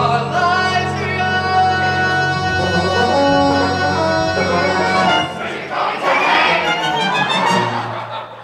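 A musical-theatre cast singing together with instrumental accompaniment. About five seconds in, the voices swell into a louder, rougher mass before the sound drops away near the end.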